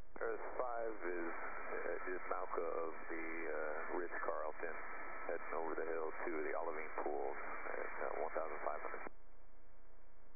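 A voice coming over a two-way radio, thin and narrow-sounding, switching on sharply and cutting off abruptly about nine seconds in.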